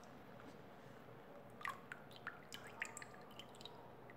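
Faint scattered drips and small liquid clicks from a bucket of foamy soap mixture of oil and liquid lye, mostly in the middle and latter part.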